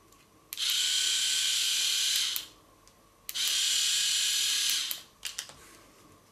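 Philips AquaTouch electric shaver's motor switched on and off twice, running in two steady whirring bursts of under two seconds each, with its casing opened. A few short clicks of handling follow.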